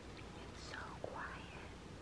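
Quiet gallery room tone, a low steady hum, with a faint whispered voice about halfway through.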